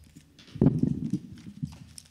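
A quick run of low knocks and thumps close to a table microphone, with smaller knocks after it, like handling noise on the microphone or the table.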